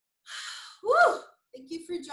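A woman's sharp breath in, followed by a short breathy voiced 'hah' whose pitch rises and falls, then speech begins near the end.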